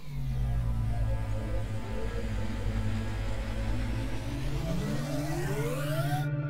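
Cinematic transition sting: a loud, steady low drone that opens with a falling tone, and a rising pitch sweep that builds over the last second or so.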